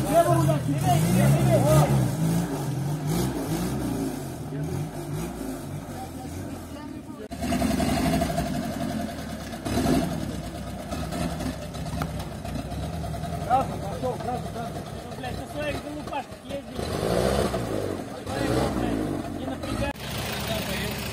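UAZ off-road vehicle engines revving under load while driving through deep mud and ruts. The loudest revving comes in the first few seconds. The engine sound changes abruptly about seven seconds in and again near the end.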